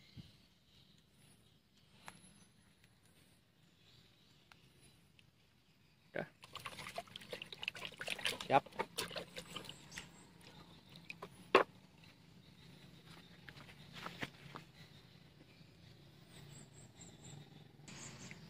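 Quiet for about six seconds, then a hand splashing and sloshing in a plastic bucket of muddy water, with irregular sharp clicks and knocks; the loudest come about two and a half and five and a half seconds after it starts.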